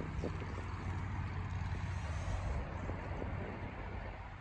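Steady outdoor background noise with a low rumble that eases a little past the middle.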